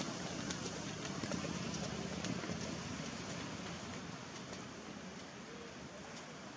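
Sea surf washing against the shore and a concrete breakwater: a steady, low-level rush of water that slowly fades.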